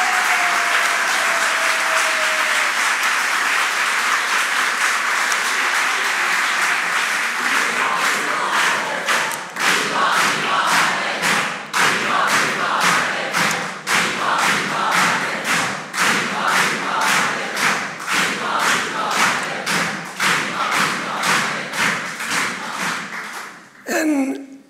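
Audience applauding: dense, even clapping that settles, about eight seconds in, into rhythmic clapping in unison at a little over two claps a second, stopping just at the end.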